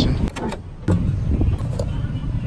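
A few light clicks and a sharper knock about a second in, from a car being handled at a gas pump, over a steady low rumble.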